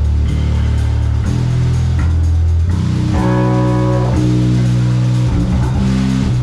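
Doom/stoner band playing live and loud: electric guitars and bass holding long, low chords that change every second or two.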